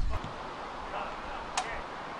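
Faint outdoor ambience with distant voices, and a single short sharp click about one and a half seconds in.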